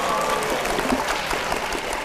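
Studio audience applauding, a dense, steady clapping.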